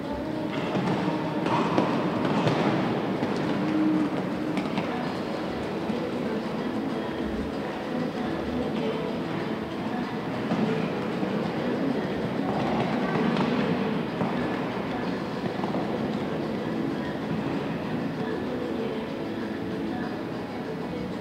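Indoor arena ambience: a steady crowd murmur with the galloping horse's hoofbeats, swelling louder about two seconds in and again around twelve to fourteen seconds.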